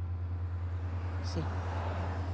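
A loud, steady low drone with an even pulse, and a vehicle's noise swelling in the second half.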